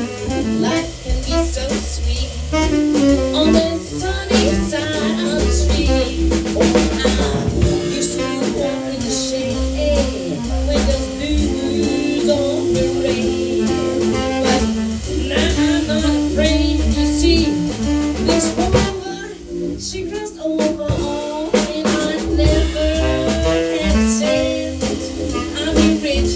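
A live jazz band plays: saxophone, keyboard and drum kit, with a woman singing into a microphone. The music dips briefly in loudness about two-thirds of the way through.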